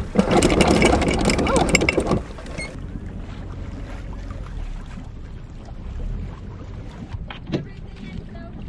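Wind and water noise on an open sailboat deck: a loud, crackling rush for about the first two seconds, then a softer steady hiss, with a single short knock near the end.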